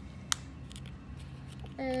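Lego plastic pieces being pressed and snapped together by hand: one sharp click a third of a second in, then a few fainter clicks.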